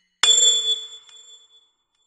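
A single bell-like metallic strike about a quarter of a second in, ringing with several high tones and fading out within about a second and a half.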